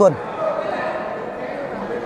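A man's commentary voice finishes a word right at the start. Then comes the steady murmur of a large indoor sports hall with faint distant voices.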